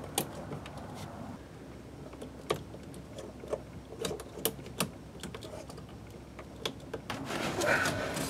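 Scattered light clicks and small rattles of battery cables and connectors being handled at the terminals of a bank of RV house batteries, with a louder scuffling near the end.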